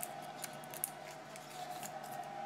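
Trading cards and clear plastic top loaders being handled: scattered light, crisp clicks and rustles over a faint steady hum.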